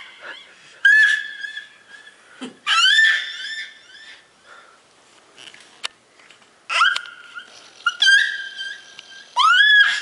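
An 11-month-old baby squealing a series of high, rising 'ah' calls, about five in all, each one trailing off in repeating copies from a delay echo effect on her voice.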